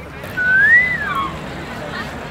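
A single clear whistle, lasting about a second, that rises in pitch and then falls away.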